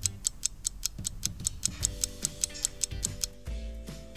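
Rapid clock-ticking sound effect, about five even ticks a second, marking the animated clock hands moving round to a new time; the ticks stop shortly before the end. Soft background music comes in about halfway through.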